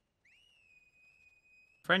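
A faint, high, whistle-like tone that rises slightly as it begins, then holds one steady pitch for about a second and a half.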